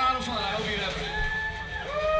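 A man talking to the audience through the PA microphone between songs, his words drawn out, over a background of crowd noise.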